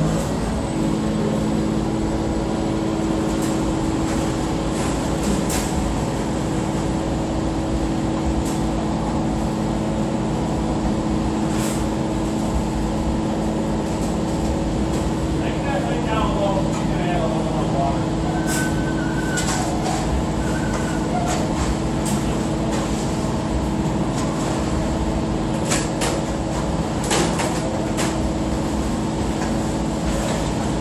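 Concrete mixer truck's diesel engine running at a steady speed, an even hum with no change in pitch, during a concrete pour. A few short sharp knocks are heard over it.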